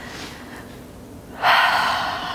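A woman's sudden, loud breath about one and a half seconds in, fading away over about a second.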